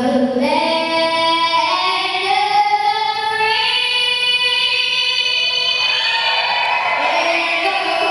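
A young girl singing solo into a handheld microphone, holding long notes.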